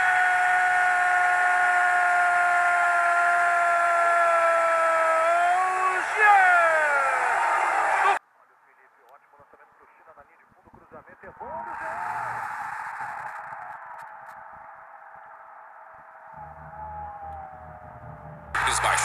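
A Brazilian TV football commentator's long drawn-out "goooool" cry. It is held on one pitch for about six seconds, then slides down and cuts off suddenly about eight seconds in. After the cut, faint stadium crowd noise swells briefly and fades.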